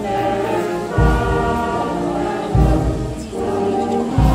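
A children's choir singing a song with instrumental accompaniment, a deep beat landing about every second and a half.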